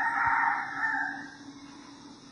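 A rooster crowing in the background, its drawn-out last note fading away about a second and a half in.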